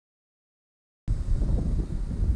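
Silence for about a second, then wind buffeting the microphone: a loud, uneven low rumble that starts suddenly.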